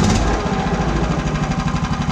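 The small air-cooled single-cylinder petrol engine of a 1:2.5-scale MAZ-537 model truck idling steadily in neutral, with a rapid, even beat.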